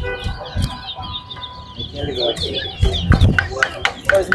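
Caged towa-towa seed finches singing rapid, warbling chirps, phrase after phrase, with other birds around them.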